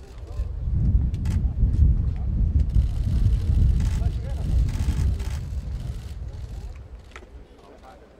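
Low, gusty rumble of wind buffeting the microphone, swelling about a second in and dying away near the end, with indistinct voices underneath.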